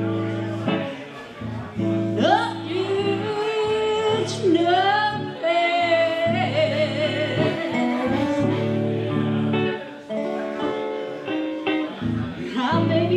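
Live blues band playing: a woman singing over her archtop electric guitar, with harmonica and a lap-style guitar. The melody lines bend and waver.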